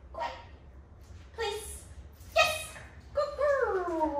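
Puppy giving three short yips about a second apart, then a long whine that slides down in pitch.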